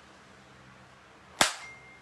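A single sharp knock or smack about one and a half seconds in, over faint room tone.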